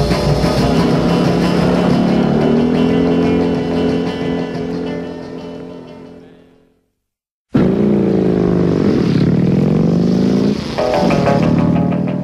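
A rock-and-roll song fading out over the first six or so seconds. After a short silence, a motorcycle engine revs loudly, its pitch dropping and climbing back twice.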